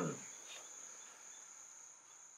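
Faint, steady, high-pitched insect drone, like crickets, in the background, with the end of a man's short 'hmm' at the very start.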